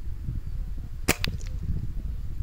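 A single air rifle shot about halfway through: a sharp crack with a quieter snap right after it.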